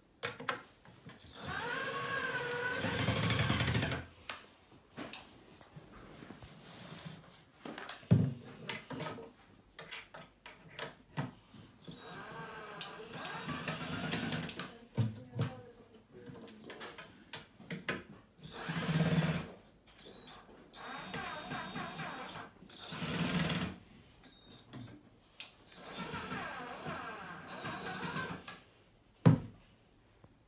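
Cordless drill-driver running in several short bursts, driving screws into OSB roof boards, the longest burst about a second in. Between the bursts come sharp knocks, the loudest near the end.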